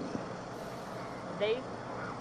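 Steady background noise of a street, picked up by a police body camera, with one brief spoken word about one and a half seconds in.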